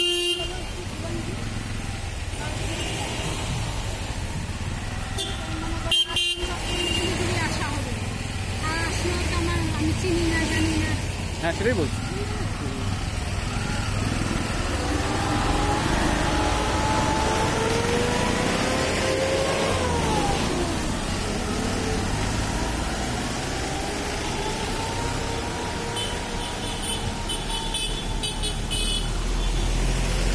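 Busy road traffic: vehicle engines running steadily, with a short horn toot about six seconds in and indistinct voices around.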